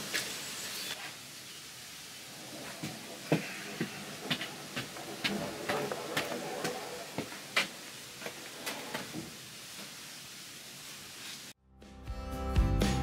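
A long timber joist being picked up and carried: scattered light knocks of wood and footsteps over a faint hiss. The sound cuts off suddenly near the end.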